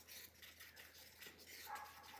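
Very faint scraping and rubbing of a wooden stir stick against the inside of a small plastic cup as resin and pigment are stirred.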